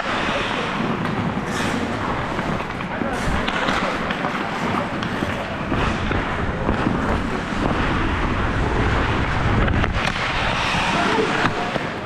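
Hockey skate blades carving and scraping on rink ice during play, with a steady rush of air on the microphone and a few sharp clicks of sticks or puck on the ice. Players' indistinct voices call out in the background.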